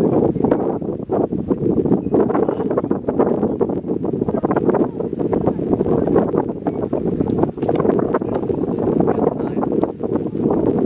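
Wind buffeting the microphone: a loud, steady rushing rumble with frequent crackles.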